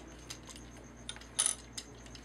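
A plastic Transformers Orion Pax toy figure being handled: faint light clicks and taps of its plastic parts, with one louder short click-and-rub about one and a half seconds in.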